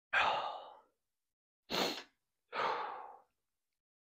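A man's heavy, emotional breathing close to the microphone: a long sighing out-breath, a short sharp in-breath about two seconds in, then another sighing out-breath, as he pauses choked up.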